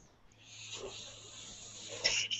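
A man breathing out heavily and noisily close to a microphone, a rasping hiss that starts about half a second in and grows stronger.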